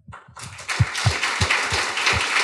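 Audience applauding: the clapping builds up over the first second, then runs on steadily.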